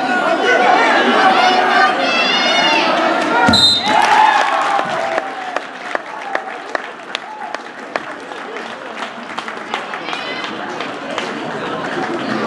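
Spectators yelling from the gym bleachers, then a single thud with a short, high whistle blast about three and a half seconds in: the referee's mat slap and whistle signalling a fall, which ends the wrestling match. Scattered clapping follows.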